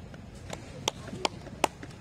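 A few sharp hand claps, about one every third of a second, after the guitar music has stopped.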